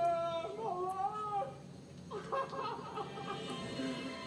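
A man wailing in long, wavering cries, twice, as he lies on the ground; background music comes in near the end.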